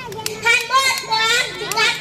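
A young girl giving a speech in Urdu into a microphone, speaking continuously with rising and falling emphasis.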